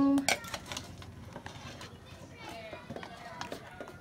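Metal spoon and metal tongs clinking and scraping against a metal wok and the shell of a cooked mud crab as the crab is lifted out, with several sharp clicks in the first second and fainter knocks later.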